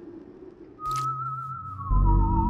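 A quiet hum, then about a second in a short click and a high, wavering theremin-like tone with a deep drone under it. Near the end a second wavering tone joins, sliding slowly downward: an eerie sci-fi music cue.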